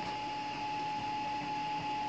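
A steady high-pitched machine whine with a faint room hiss beneath it, even and unbroken throughout.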